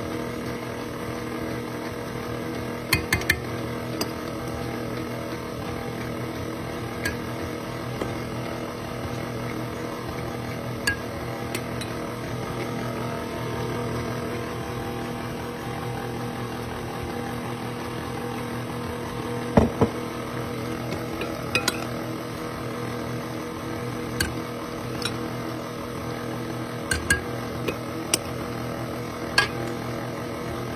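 KitchenAid stand mixer motor running steadily on low speed, its flat beater turning cake batter in the steel bowl. Sharp clinks ring out every few seconds.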